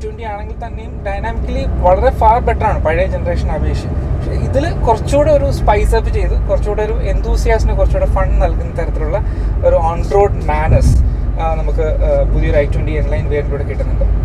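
A man talking inside the cabin of a moving Hyundai i20 N Line, over a steady low engine and road drone.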